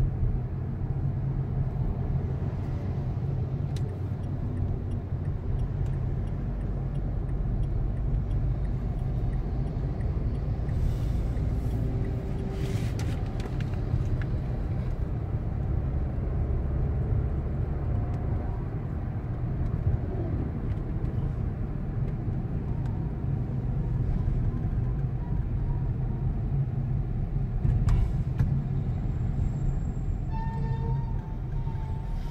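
Steady low rumble of engine and road noise from a moving car, heard from inside the cabin.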